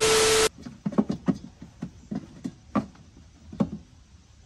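A half-second burst of TV-style static with a steady beep tone from a video transition effect, followed by a series of short, sharp knocks and clicks, irregularly spaced.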